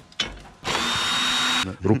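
A power drill runs for about a second with a steady high whine, starting and stopping abruptly.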